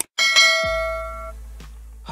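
A mouse-click sound effect followed by a bright bell ding that rings and fades out over about a second: a notification-bell sound effect. A low steady hum sits underneath from about half a second in.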